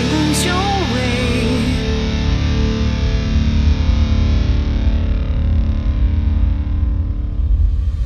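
Last bars of a goth metal song: a female singer's wavering held note ends about a second and a half in. A distorted electric guitar chord then rings on, growing gradually duller.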